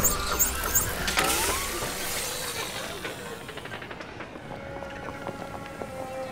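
Sound effects from an animated short: a sudden rumbling swell with squealing and a short rising whine about a second in, fading away over the next few seconds, over a soft music bed.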